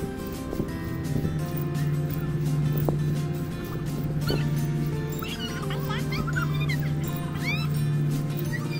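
Background music with long held notes over a steady low tone. Short high rising chirps come in over the last few seconds.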